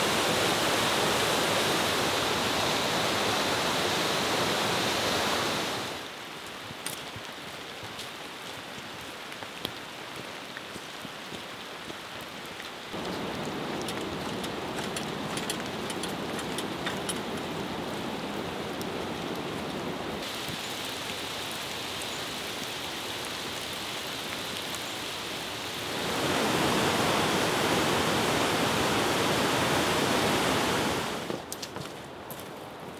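Steady rushing noise of running water, cut into sections: loudest for the first six seconds and again over the last four, quieter in between, with faint scattered ticks through the quieter middle stretch.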